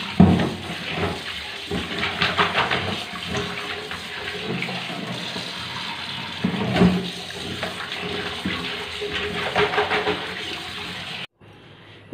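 Tap water running into a steel bowl in a stainless steel sink as pieces of fish are rinsed by hand, with splashing and a couple of knocks against the bowl. The water cuts off abruptly about a second before the end.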